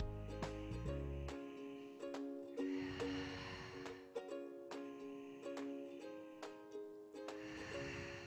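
Gentle background music of plucked-string notes over held tones, with a low bass layer that drops out about a second and a half in.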